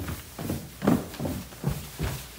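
Footsteps going down a flight of indoor stairs, about five steps at a steady walking pace, each a dull thump.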